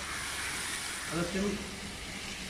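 Hot oil sizzling steadily in a deep fryer as flour-coated fish fillets fry.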